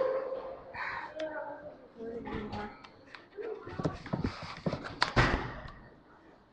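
Brief indistinct voices, then scattered knocks and rustles from a laptop being carried and handled while walking, with the loudest knock about five seconds in.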